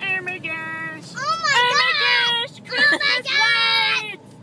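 A high voice singing loudly in long, sliding notes, starting in earnest about a second in with a brief break near the middle, over the steady low rumble of a car cabin.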